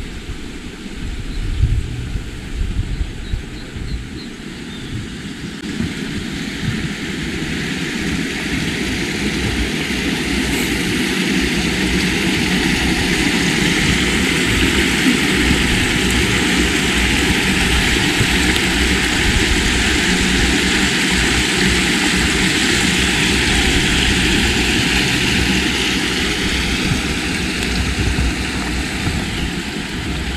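An aircraft passing overhead: its engine drone swells up over several seconds, holds for a while and fades near the end, with a slight falling pitch as it moves away.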